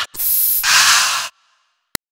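Aerosol deodorant can spraying: a hiss of just over a second that cuts off suddenly, followed by a short click near the end.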